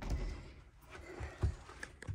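A few soft, low thumps with faint rustling and a light tick near the end: footsteps on the motorhome floor and handling noise from the camera as it swings round.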